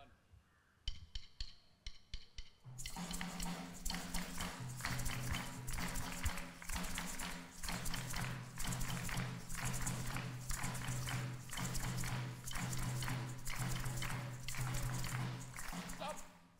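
A group of people clapping and tapping a rhythm together in a drum-circle game. A few sharp stick clicks set the beat about a second in, the whole group joins in at about three seconds, and all of it stops together at the end. A low steady hum runs beneath the clapping.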